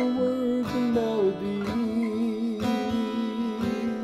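Walden G630 CE cedar-and-rosewood acoustic-electric guitar strummed about once a second through a Fishman Loudbox Mini amplifier, under a man's voice holding a long sung note with vibrato.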